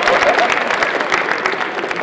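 Audience applauding, a dense patter of many hands clapping that eases off slightly near the end.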